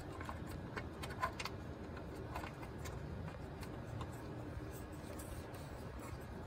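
Faint scattered clicks and light scraping as a screw is turned by hand to tighten a bracket that locks into a metal channel, over a steady low room hum.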